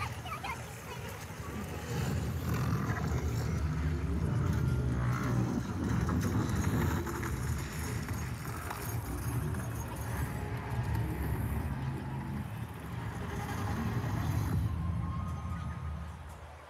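Soundtrack of an outdoor projection show, heavy in the low end, that falls away about a second before the end as the projection finishes.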